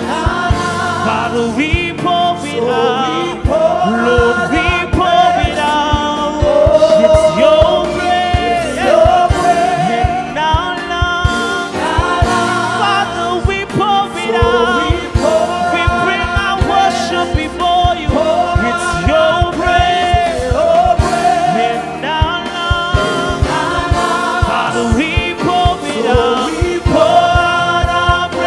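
Gospel worship song sung by a church worship team, several voices singing together with held, wavering notes over a steady instrumental backing with a low bass line and beat.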